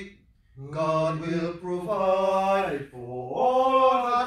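Male voice singing a church hymn in long, held notes, with a brief break just after the start.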